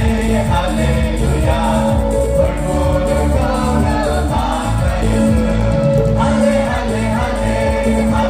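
A small group of men and women singing together through microphones over an amplified band with a steady beat, in the manner of a gospel song.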